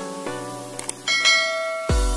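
Light background music with a short mouse-click sound and then a bright, ringing bell ding about a second in: the click-and-bell sound effect of a subscribe-button animation. Near the end a heavier electronic beat with deep bass-drum kicks comes in.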